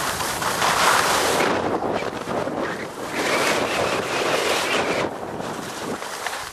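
Wind rushing over the microphone of a camera carried by a moving skier, mixed with skis scraping across firm snow; the noise swells and fades twice.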